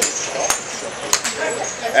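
Sharp clicks of a 7-iron striking a golf ball off a driving-range mat, two clicks a little over half a second apart, the second reaching highest.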